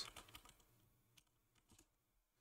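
Faint computer keyboard typing: a few soft, scattered keystrokes, barely above silence.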